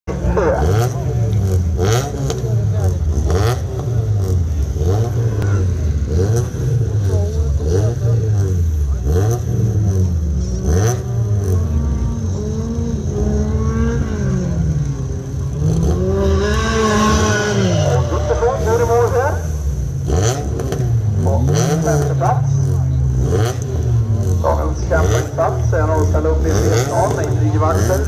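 Race car engines on the start grid, revved again and again while waiting for the start, their note rising and falling about once a second; about halfway through one engine is revved higher for several seconds.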